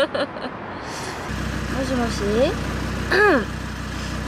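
Low, steady hum of a car's engine heard from inside the cabin, coming in about a second in, with a woman's voice over it.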